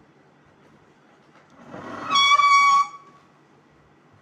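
A single loud, high-pitched whistle blast lasting under a second, rising out of a short hiss about two seconds in.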